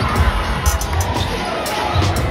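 Basketball bouncing on a hardwood court in an arena, low thumps under crowd noise, with music playing.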